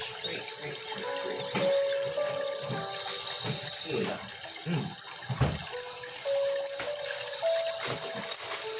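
Background music with long held notes that step from one pitch to the next, over a faint steady hiss.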